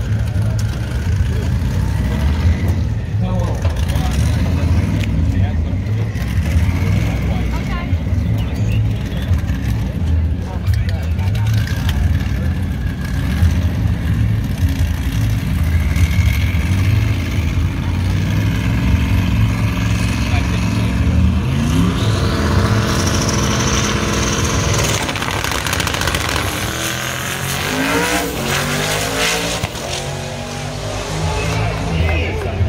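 Drag-race cars running at the starting line with a loud, loping rumble. About two-thirds of the way in they rev and launch, their engine pitch climbing into a rising whine as they accelerate away down the strip, then dropping off.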